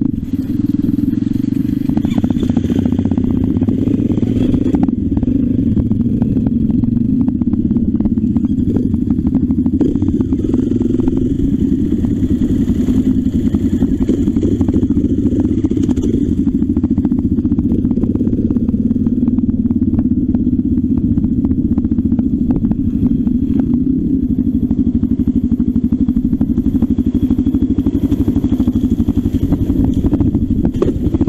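Off-road trail motorcycle engine running steadily under way on a rough dirt track, with rattling and clatter from the bike over the ruts.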